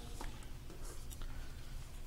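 Quiet room tone: a steady low hum with a few faint small clicks and rustles.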